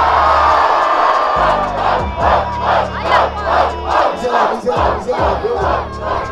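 Rap-battle crowd roaring in response to a punchline, then breaking into rhythmic chanted shouts, about three a second, over the low bass of a hip-hop beat.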